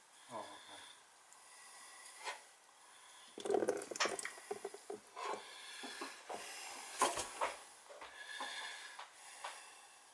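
Faint, irregular light clicks and knocks over a soft hiss, with a brief muttered word at the start and another about three and a half seconds in.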